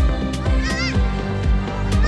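Loud music with a steady beat played over a loudspeaker, with a high pitched note that swoops up and falls back twice.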